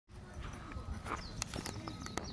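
Small birds chirping in short, falling high calls from about halfway in, over steady low background noise, with a few sharp clicks.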